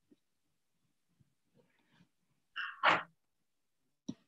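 A person sneezing once, about two and a half seconds in: a short pitched onset followed by a sharp, louder noisy burst.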